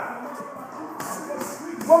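Boxing gloves hitting a heavy punching bag, a few sharp slaps about a second in and again near the end, with music playing faintly in the background.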